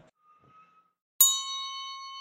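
A single bright bell-like chime struck about a second in, ringing with several clear tones and slowly fading, after a second of near silence.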